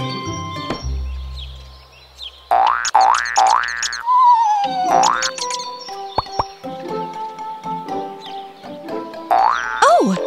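Cartoon comic sound effects over light children's background music: three quick rising springy glides about two and a half seconds in, then a wavering falling whistle, another rising glide about five seconds in and one more near the end.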